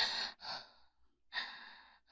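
A woman's breathy sighs: two short breaths, then a longer exhaling sigh starting just over a second in.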